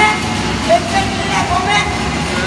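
A man shouting loudly with no clear words: several short, high-pitched cries over a noisy background.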